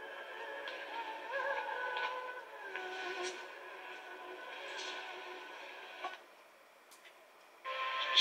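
Film soundtrack music playing through a television's speaker, with sustained tones that shift in pitch. About six seconds in it cuts off as the channel is changed, and after a brief near-silent gap the next channel's louder sound comes in near the end.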